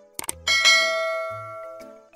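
A couple of quick click sound effects, then a bright bell ding from a subscribe-button animation about half a second in, ringing out and fading over about a second and a half. Background music with a steady low beat plays underneath.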